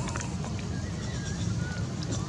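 Steady low wind rumble on the microphone, with a few light splashes and clicks near the start as a young macaque's hands work in muddy puddle water, and faint wavering high-pitched calls in the middle.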